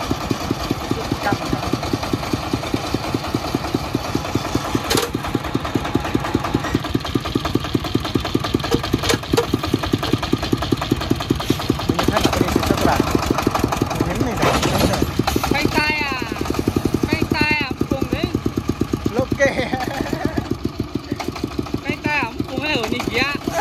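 A công nông farm truck's single-cylinder diesel engine running at low speed, its firing beats coming evenly at roughly ten a second. It runs louder for a few seconds past the middle as the truck is driven, then settles back.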